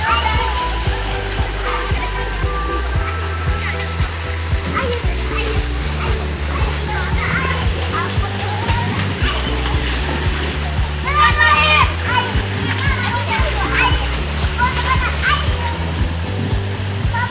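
Children playing and splashing in a swimming pool under a background music track with a steady bass line; a child's voice calls out loudly about eleven seconds in.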